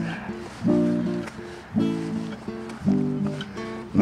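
Background music: acoustic guitar chords strummed about once a second, each ringing out before the next.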